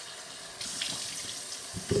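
Bathroom sink faucet running, a steady stream of water splashing into the basin, a little louder from about half a second in.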